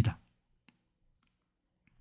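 A man's spoken word trails off at the start, then a pause of near silence broken only by a couple of faint clicks, one about two-thirds of a second in and another shortly before the end.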